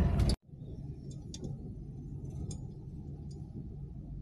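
Steady low rumble of a moving car's cabin, engine and road noise, with a few faint high ticks scattered through it. The louder in-car sound cuts off sharply just after the start.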